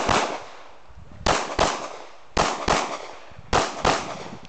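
Pistol shots fired in quick pairs, each pair two shots about a third of a second apart and about a second from the next pair: four pairs in all, one right at the start. Each shot has a short echo.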